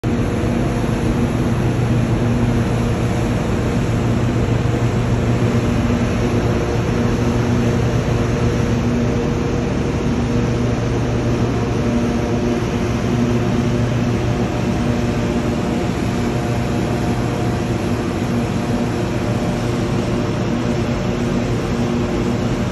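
Steady low drone of ship machinery with a constant hum, over the rush of propeller-churned water between two ships' hulls.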